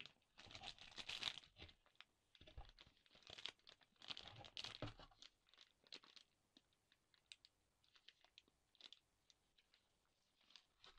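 Packaging being handled: crackly rustling and crinkling of cardboard, paper and plastic in two busy bursts over the first five seconds, then only a few faint scattered clicks and rustles.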